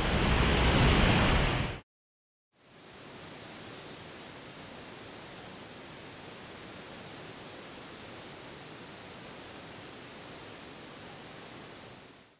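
Close waterfall and river rushing loudly as a steady roar, cut off abruptly a little under two seconds in. After a brief silence, a steady, much quieter even hiss runs on.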